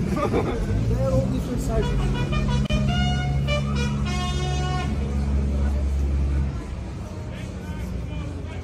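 A vehicle engine rumbling for about six seconds, stopping suddenly near the end, with a horn sounding in several steady blasts through the middle.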